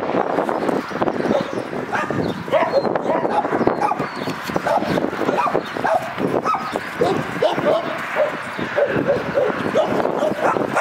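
Two dogs play-fighting, with rapid growls and short yips that come thick and fast from about two seconds in.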